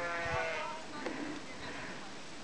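A flock of sheep bleating: one loud, long bleat in the first half, then fainter bleats, with a sharp click about a second in.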